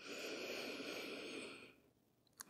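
A person's slow, deep breath, soft and airy, lasting nearly two seconds and fading out near the end.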